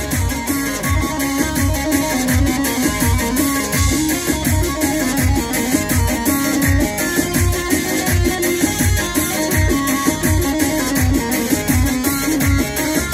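Electronic keyboard playing live Kurdish folk dance music: a melody over a steady drum beat of about two strokes a second.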